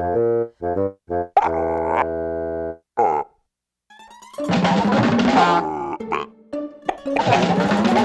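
Cartoon soundtrack: a run of short pitched notes and a held tone, a brief silence about three seconds in, then busy comic music and sound effects with sliding pitches as a cartoon character tumbles about.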